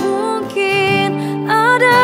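Acoustic pop cover of an Indonesian song: a woman sings long held notes that slide between pitches over acoustic guitar, moving up to a higher note about one and a half seconds in.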